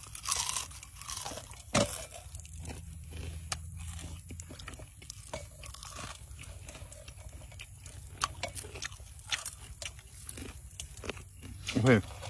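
Someone biting and chewing crispy fried leaves close to the microphone, with irregular sharp crunches throughout.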